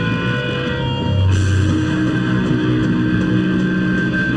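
Live hardcore punk band playing loud: electric guitars ringing out held chords, then the drums and cymbals come in with the full band about a second in.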